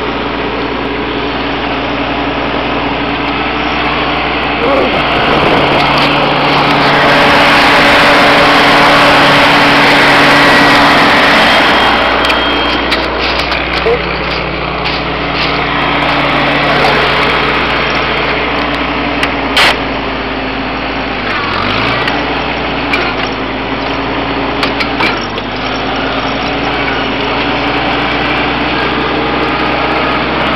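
1956 Farmall Cub's four-cylinder engine running steadily as the tractor drives, a little louder for a few seconds around a quarter of the way in. Scattered knocks and rattles come through over it, one sharp click about two-thirds of the way in.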